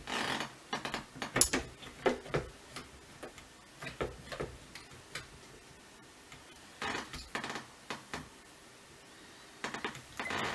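Small clicks, taps and light knocks of a Tasco 999VR tabletop telescope being handled as its tube is set onto the pillar mount and fitted, coming in scattered clusters with quiet gaps between.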